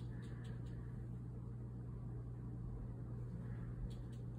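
Steady low background hum with a faint even rush, and a few faint ticks in the first second.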